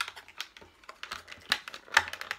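Clear plastic wrapper being handled and pulled at by fingers, crackling in quick irregular clicks, with the loudest crackles about one and a half seconds in and near the end.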